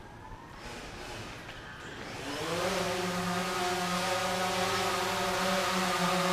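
DJI Phantom 3 quadcopter's four motors spinning up: faint at first, then rising in pitch and loudness about two seconds in to a steady pitched buzz as the drone goes up.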